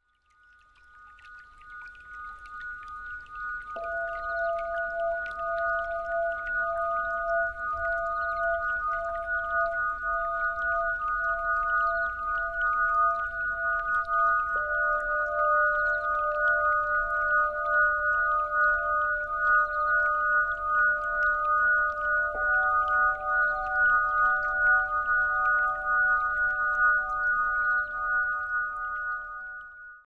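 Ambient new-age music of sustained crystal singing bowl tones: two high tones swell in at the start and hold steady. Lower bowl tones enter one after another, about four seconds in, near the middle and about two-thirds through, each ringing on beneath the others.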